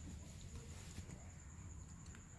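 Faint room noise: a low hum and a thin, steady high-pitched whine, with a faint click about a second in.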